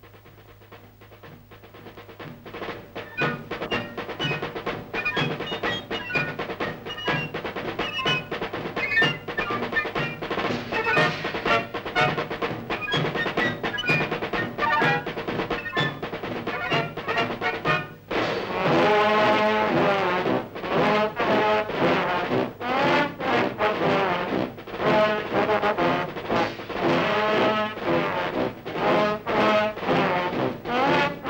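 Military march music on an old film soundtrack: it fades in under a steady drum beat with drum rolls, and about two-thirds of the way through brass comes in loudly over the drums.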